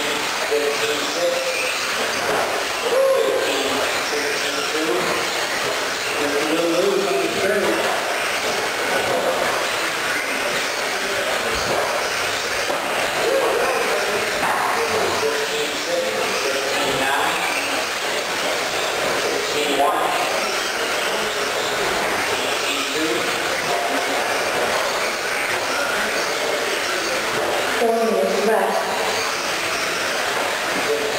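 Electric R/C stadium trucks racing on an indoor dirt track: a steady wash of motor and tyre noise in a large hall, with no break in it.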